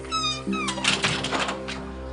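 A short high-pitched call that falls in pitch at its end, over steady background music, followed by a few soft clicks and rustles.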